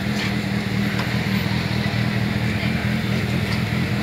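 A small engine or motor running steadily with an even low hum, under faint background voices.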